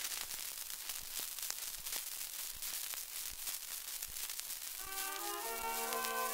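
Surface noise of a 1921 shellac 78 rpm record as playback begins: steady hiss and crackle with a click about every three-quarters of a second. About five seconds in, the orchestra accompaniment starts its introduction.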